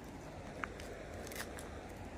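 Faint, steady flow of a small stream, with a couple of light clicks partway through.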